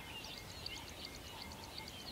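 Faint birdsong: small birds chirping in quick, short high calls and little falling notes, over a steady hiss.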